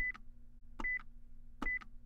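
Quiz countdown timer sound effect: three short high beeps, each with a click at either end, about every 0.8 s over a faint steady low hum.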